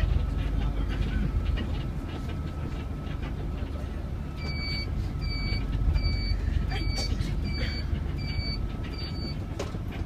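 City bus running along the road, heard from inside the cabin at the front: a steady engine and road rumble with a faint steady whine. About four seconds in, an electronic beeper sounds seven short beeps, a little under one a second.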